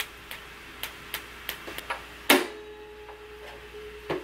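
Taut sewing thread drawn off its spool and plucked close to the microphone: a run of light, irregular ticks, then a louder snap a little past two seconds in that leaves a steady low ringing tone hanging for about two seconds.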